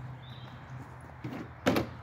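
Handgun being handled and set down on a plastic folding table: quiet handling, then one short knock near the end as it touches down.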